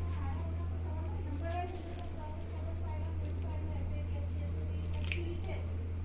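Steady low hum with faint voices in the room, and a few brief rustles and snaps of a rubber tourniquet being fastened around an arm.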